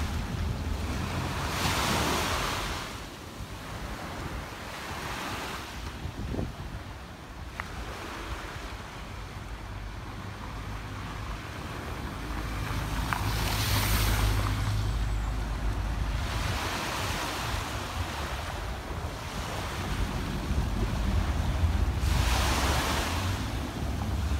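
Small waves washing onto a sandy beach, the hiss swelling and fading every few seconds, with wind rumbling on the microphone, heavier in the second half.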